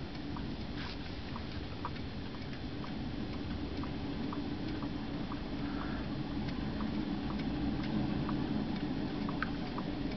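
Solar-powered dancing elf figurines ticking softly as their drives pulse, about two faint clicks a second, over a steady low hum.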